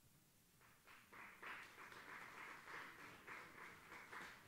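Audience applauding, starting about a second in: a dense, irregular patter of many hand claps.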